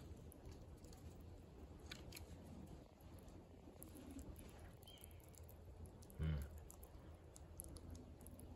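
Gray squirrel chewing and nibbling food: faint, scattered small clicks over a low steady hum.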